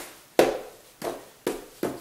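Four sharp knocks on a hard surface, each ringing briefly, at uneven intervals of about half a second.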